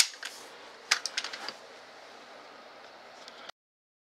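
Quick cluster of sharp metallic clicks about a second in as a Mossberg 590 12-gauge pump shotgun is handled, over faint room hiss that stops abruptly near the end.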